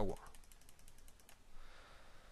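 A computer mouse making a quick, even run of faint small clicks for about a second and a half as a spinner value is stepped down, then quiet room hiss.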